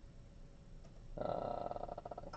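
Quiet room tone, then from about a second in a drawn-out hesitant 'uh' from the speaker's voice.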